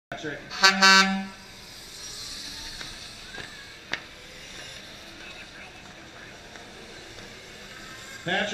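A horn sounds once near the start, a single steady note held for under a second. After it there is only low, steady background noise, broken by one sharp click about four seconds in.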